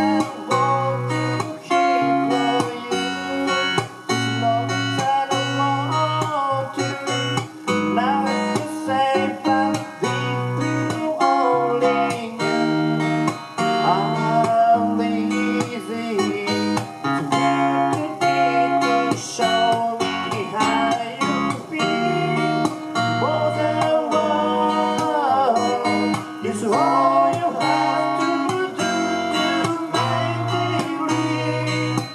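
Live acoustic guitar music, plucked and strummed over a steady bass line, with a sliding, wavering melody line above it.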